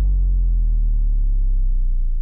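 A deep, low sustained bass tone, the closing drone of a film trailer's soundtrack, holding steady.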